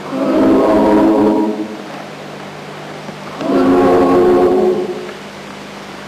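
Women's choir singing a Ukrainian folk song in long held chords. The chords come in two swelling phrases of about a second and a half each, one just after the start and one about three and a half seconds in, with a quieter stretch between.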